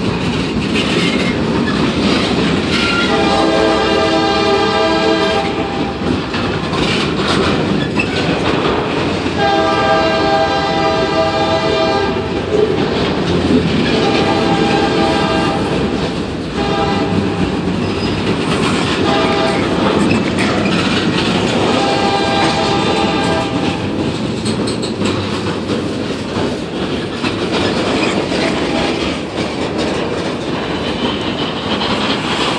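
Loaded freight cars rolling past close by with steady wheel rumble and clatter over rail joints. Over it, the locomotive's multi-note K5LA air horn sounds several blasts; from about ten seconds in these run long, long, short, long, the grade-crossing signal.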